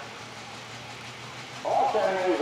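Super stock pulling tractor's engine idling at the start, a low steady hum, with a man's voice coming in near the end.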